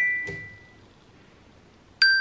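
iPhone timer alarm going off: a run of bright chime tones rings out and fades, a pause, then the run of tones starts again at the end.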